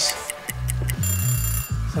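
Stopwatch sound effect: ticking clicks and a short bright ring lasting under a second, starting about a second in, over background music with a steady bass line.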